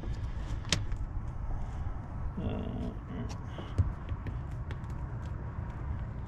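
Gray plastic interlocking deck mat tiles being shifted and pressed by hand on a boat deck, giving a few light clicks and taps, the sharpest about a second in and near the middle, over a steady low rumble.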